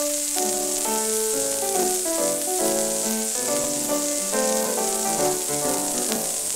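Instrumental passage from a 1930 78 rpm record, played back flat without equalisation, with a steady strong hiss lying over the music. The hiss comes from a stylus too small for the groove bottoming out in it.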